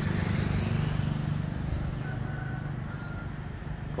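A motor vehicle engine running steadily at low revs, a low hum that grows slightly fainter toward the end.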